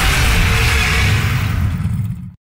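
Loud monster-roar sound effect edited over a man straining under a heavy barbell squat: a rough, deep rumbling roar with hiss on top.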